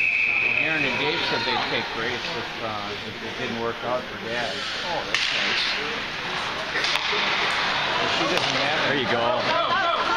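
A referee's whistle blows once for about a second, then players and spectators shout and call out over each other in an ice rink. A few sharp cracks of sticks and puck come about halfway through.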